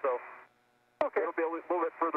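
Speech over a narrow-band radio voice loop, with a short gap and a sharp click about a second in before the talk resumes.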